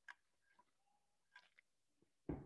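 Near silence, broken by a few faint clicks: one just after the start and two more about a second and a half in.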